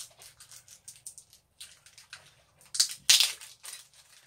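A small plastic miniature table being handled in the fingers: faint ticks and clicks, then a brief, loud scratchy rustle about three seconds in.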